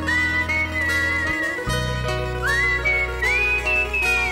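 A rock ballad's lead melody whistled over a live band, with acoustic guitars, bass and drums. The whistle slides up into each phrase and wavers slightly on the held notes. The low bass and drums drop out for a moment about a second and a half in.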